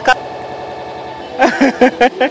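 Voices talking close to the microphone over a steady background hum, with a held tone in the pause between the words.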